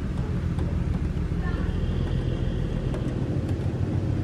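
Steady low engine drone with a deep, even hum that holds the same pitch throughout.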